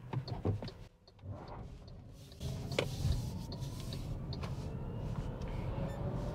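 MG5 EV's electric drive motor pulling away, heard from inside the cabin: after a quiet start, a faint whine comes in about two seconds in and rises steadily in pitch as the car gathers speed, over a low road and tyre rumble. A few light clicks along the way.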